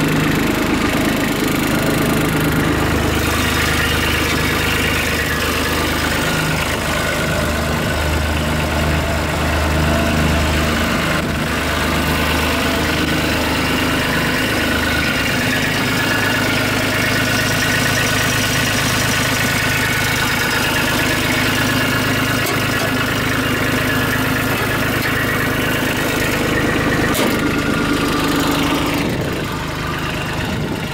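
Kubota B2230 compact tractor's three-cylinder diesel engine idling steadily.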